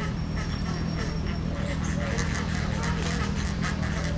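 A flock of flamingos calling: a continuous chatter of short, overlapping calls, several a second, over a steady low hum.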